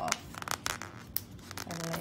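Round adhesive label being peeled off its backing sheet: a run of short crackles and clicks from the paper.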